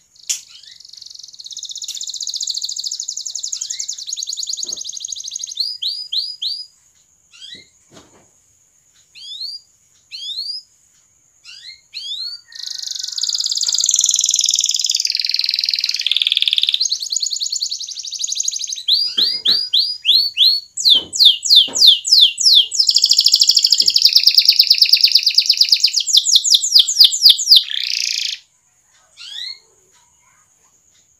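Domestic canary singing: long, dense rolling trills alternate with quick runs of rising chirps, broken by short pauses. The song is loudest in the second half and stops shortly before the end.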